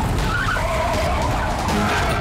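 Car tyres screeching in a skid, one long wavering squeal.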